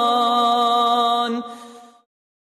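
Quran recitation: one voice holds a long, steady note on the closing word of the verse, then fades out about a second and a half in.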